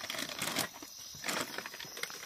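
Plastic packaging crinkling and tearing as a bag of dog chew bones is opened by hand, in irregular crackles.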